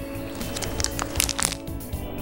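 Background music, with a few short crackles from a plastic packet of sanitary pads being handled about a second in.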